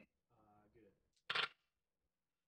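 Dice dropped into a wooden dice tray, a short clatter about a second and a half in.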